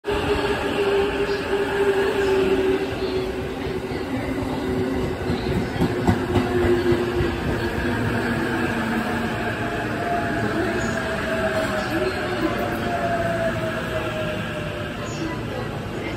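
JR E353 series limited express electric train running alongside the platform. Its motor whine falls slowly in pitch over the rumble of the wheels as it slows.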